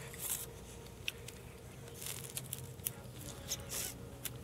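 Metal spoon clicking and scraping against a china soup plate, with a few short soft mouth sounds of eating soup between the clicks.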